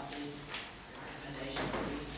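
Speech in a meeting room over a desk microphone, with a brief knock about half a second in.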